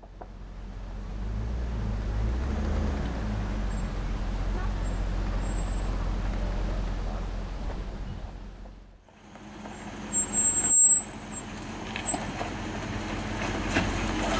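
Land Rover Discovery 2's V8 engine running at low speed with trail noise, fading in. About nine seconds in the sound breaks off briefly, then the engine is heard again at a crawl with a few louder bursts as the truck climbs onto a rock.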